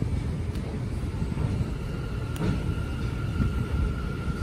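Steady low rumble of a subway train out of sight, with a faint thin whine coming in about a second in.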